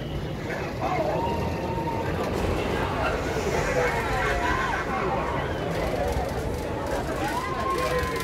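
Riders' voices calling out and squealing as the rocking tug boat ride swings, including one long held high call near the end, over a steady low rumble.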